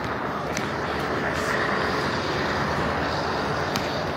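Road traffic noise: the steady noise of a motor vehicle going by on the road.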